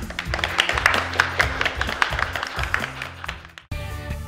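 A few people clapping in irregular, quick claps after a closing thank-you, over background music. The clapping fades out and the music changes abruptly shortly before the end.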